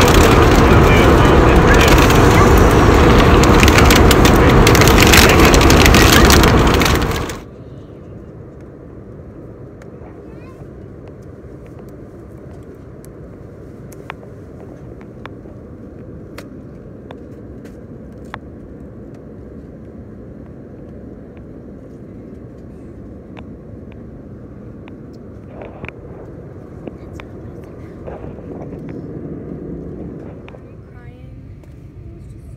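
Loud rushing noise that cuts off abruptly about seven seconds in, followed by the steady low drone of an airliner cabin in flight, with faint scattered clicks.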